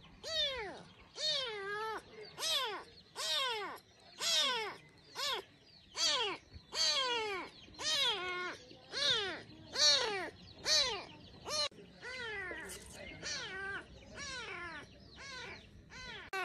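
A very young kitten meowing over and over in shrill, high-pitched cries, about one and a half calls a second, each call rising then falling. It is the constant crying that the finder takes as a sign it has not eaten.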